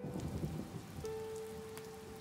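Heavy rain falling steadily, an even hiss with scattered drop impacts, under soft sustained music notes.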